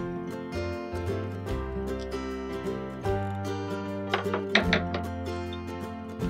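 Background music plays throughout. About four seconds in, scissors make a quick run of several sharp snips cutting through layered fabric.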